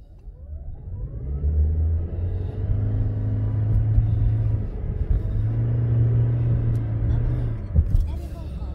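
A car's engine and road noise heard from inside the cabin as the car pulls away and gathers speed. The sound rises in pitch over the first second or so, then settles into a steady low drone that dips briefly about five seconds in before carrying on.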